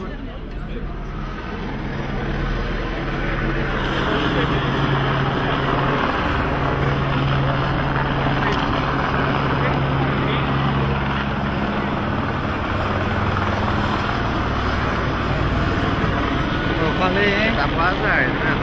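Police patrol vehicle's engine and road noise, a steady drone that gets louder about two seconds in.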